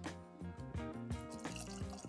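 Background music over bourbon being poured from a bottle into a tulip-shaped tasting glass, a thin stream of liquid trickling into the glass.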